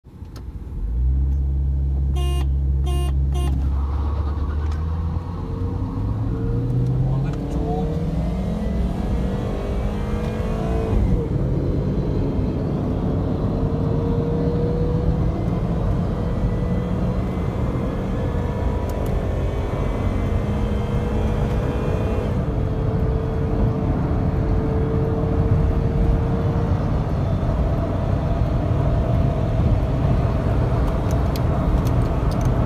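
Suzuki Swift's engine heard from inside the cabin, first held at steady revs, then accelerating hard, its pitch climbing in several long rises as it goes up through the gears, over heavy road and wind noise. Three short beeps sound about two to three seconds in.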